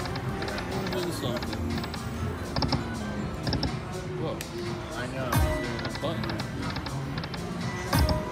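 Dragon Link Golden Century slot machine spinning over and over with no wins, its short electronic reel tones repeating every second or two. Casino background of music and voices runs under it.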